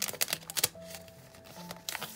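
A sheet of stickers and its paper insert handled by hand: several crisp rustles and taps in the first part. Soft background music with held notes follows.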